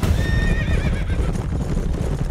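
A horse whinnying once near the start, a high call under a second long that wavers toward its end, over fast, dense hoofbeats.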